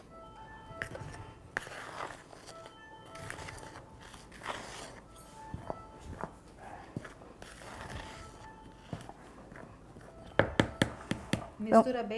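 A metal spoon stirring dry bread flour mix in a plastic bowl: soft scraping every couple of seconds, then a quick run of taps near the end. Faint chime-like background music plays underneath.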